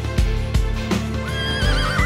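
Background music with a steady beat, and a horse whinnying over it from about a second and a quarter in: one wavering call that falls away at the end.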